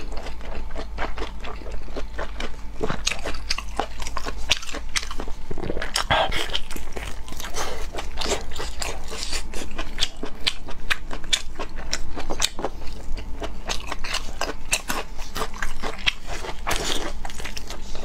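Close-miked biting and chewing of red-braised pork large intestine, a steady, irregular run of quick clicks from the mouth and the food.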